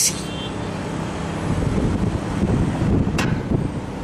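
Outdoor rumble of street traffic and wind buffeting the microphone, low and uneven, with a brief click about three seconds in.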